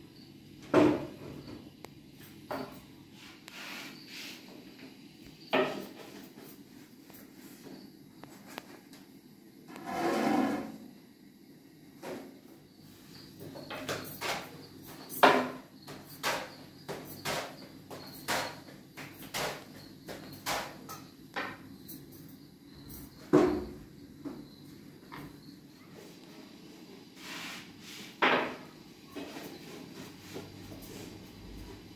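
Scattered knocks and clunks, as of objects being handled and set down, with a noisy burst lasting about a second about ten seconds in.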